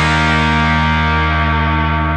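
The closing chord of an indie rock song, held on distorted, effects-treated electric guitar and slowly dying away.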